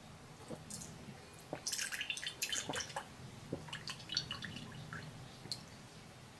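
Milk being poured into a glass: short, irregular splashes and clinks over a faint low hum.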